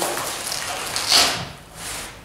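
Rucksack nylon fabric and velcro fastenings rustling and rubbing under the hands, with one louder, brief scratchy rasp about a second in.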